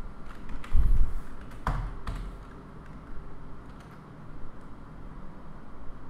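Computer keyboard typing: scattered key clicks, with a heavier low thump about a second in.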